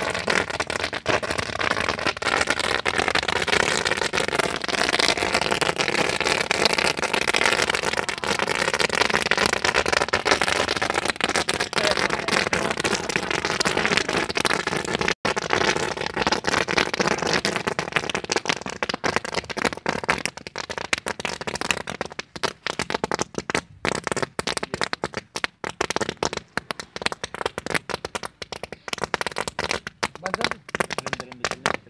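Small firecrackers going off in rapid, continuous crackling, thinning out into sparser separate pops over the last several seconds.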